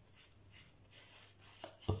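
Fingers rubbing thick shaving-stick lather over the cheek and jaw: a few faint, soft rasping strokes.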